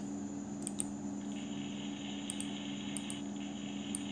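A few light clicks of a computer mouse button, some in quick pairs, over a steady low hum.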